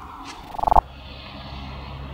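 A car driving along the street below gives a low, steady rumble that slowly grows. About half a second in there is a short buzzing rattle that gets louder and cuts off sharply.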